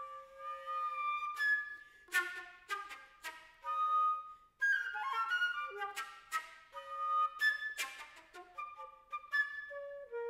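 Solo concert flute playing a lively passage of short, sharply attacked notes and quick runs, with a brief break about halfway through.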